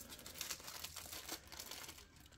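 Thin plastic wrapping being peeled off a suet cake tray, crinkling faintly with many small crackles.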